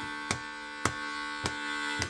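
A harmonica holding one chord, with three sharp taps about half a second apart.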